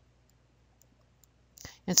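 Faint clicks of a stylus tapping a tablet screen while numbers are hand-written, otherwise very quiet; a breath and the start of speech come near the end.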